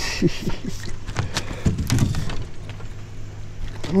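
A short splash as a crappie is swung up out of the water, followed by scattered knocks and thumps as the hooked fish flops and strikes the boat.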